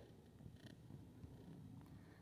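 Near silence: a faint low rumble of background noise, with a faint click at the very start.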